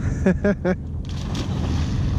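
A nearby ski boat's engine idling, a low steady rumble. A few short syllables of a voice come early, and a hiss rises over it from about a second in.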